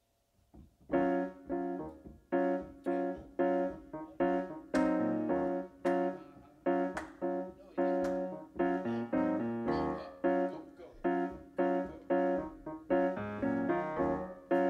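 Grand piano played alone, starting about a second in with rhythmic jazz chords at about two a second.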